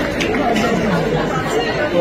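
Indistinct talking: one voice over the steady chatter of a large audience in a hall.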